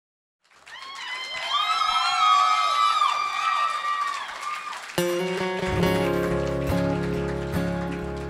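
Audience cheering and whooping with rising and falling cries. About five seconds in, a band starts a live song: acoustic guitar chords come in suddenly and ring on.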